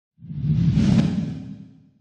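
Whoosh sound effect with a deep rumble under it, swelling to a peak about a second in and then fading away.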